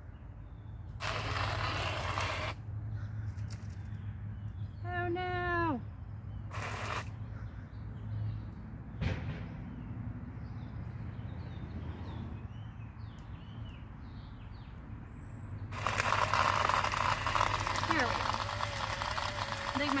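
Battery-powered portable blender running with a low steady motor hum, broken by bursts of crushed ice and frozen strawberries rattling and grinding against the blades; the longest and loudest burst comes in the last few seconds. The blender is struggling: its battery may be dying, and the ice has bunched at one end.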